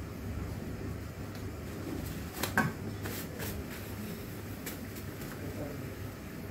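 Steady low background hum with a few soft, brief rustles in the middle as tissue paper is wiped across the heater's glass-ceramic surface.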